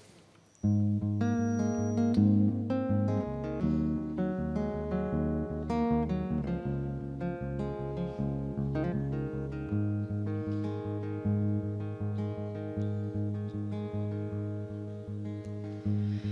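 Steel-string acoustic guitar strummed in a steady rhythm, the instrumental introduction of a song. It starts about half a second in and changes chord a few times.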